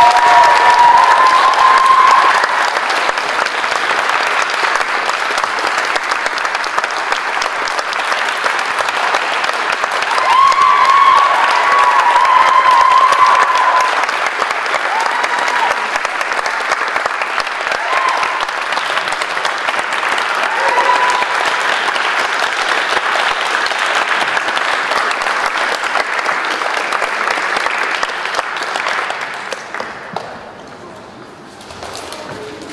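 Theatre audience applauding steadily for the curtain call at the end of a play, with a few voices calling out over it near the start and again about ten seconds in; the applause dies away at the end.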